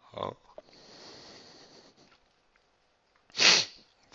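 A person's breathing and nose sounds: a short burst at the start, a faint breath out lasting over a second, and a loud, sharp sniff near the end.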